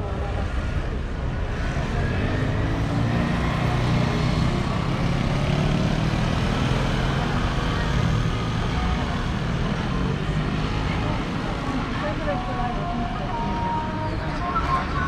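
Street traffic ambience: a motor vehicle engine rises and falls in the middle seconds over steady road noise, with people's voices near the end.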